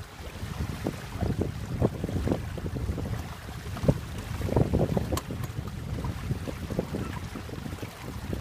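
Wind gusting across the microphone of a sailing canoe under way, an uneven low rumble, with small waves slapping and lapping against the hull.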